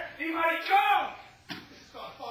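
A voice speaking in stage dialogue for about the first second, then a single sharp impact about one and a half seconds in.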